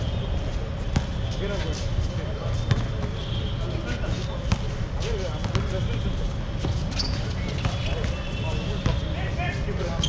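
A basketball bouncing on a hard outdoor court during a pickup game, with sharp bounces at irregular intervals rather than a steady dribble.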